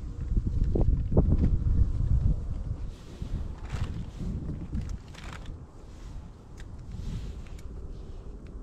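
Wind buffeting the microphone as a low rumble, strongest in the first two seconds, then easing, with a few faint clicks and two short rustles.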